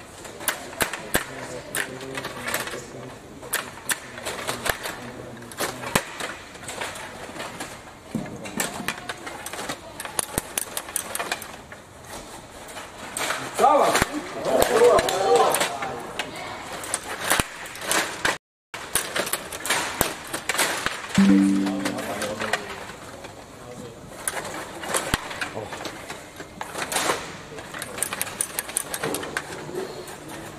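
Table hockey in fast play: a constant, irregular clatter of sharp clicks and knocks as the rod-driven players strike the puck and it hits the rink boards. Voices rise for a couple of seconds about halfway through, and a short low steady tone sounds a few seconds later.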